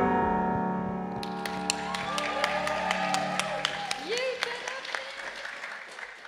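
A keyboard's final chord rings out and fades. Audience applause starts about a second in, with a few voices calling out among the claps, and thins toward the end.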